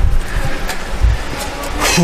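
Irregular low thumps and rumble of handling noise from a chest-worn camera rubbing and jostling against backpack straps as the wearer walks.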